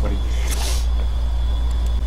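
A steady low hum runs under everything, with a short hiss about half a second in.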